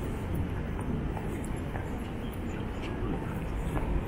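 City street ambience: a steady low rumble of traffic with scattered footsteps on paving and faint voices of passers-by.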